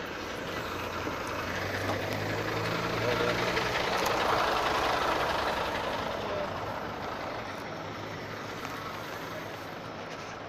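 Large diesel bus engine running close by, a low steady hum with a broad rush over it that swells to its loudest about halfway through and then fades.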